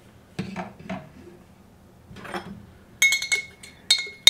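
Metal spoon clinking and scraping against the inside of a glass mason jar, a quick run of ringing taps starting about three seconds in, loosening matcha powder stuck to the glass.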